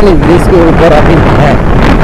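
Loud wind rush on the microphone of a KTM motorcycle cruising at about 60 km/h in fourth gear, with the engine's low drone under it.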